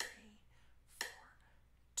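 Google's built-in online metronome played from a computer, clicking at 60 beats per minute: a sharp click at the start and another about a second later, each fading quickly.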